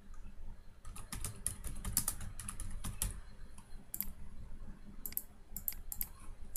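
Typing on a computer keyboard: a quick run of keystrokes starting about a second in, then a few single clicks near the end.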